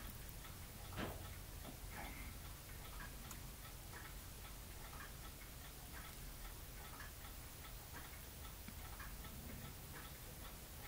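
Faint, even ticking about once a second over quiet room tone, with one slightly louder tap about a second in.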